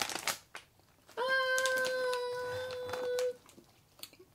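A long, level "uhhh" of hesitation, a single held vowel lasting about two seconds, with a few short clicks and rustles of snack packaging being handled just before it.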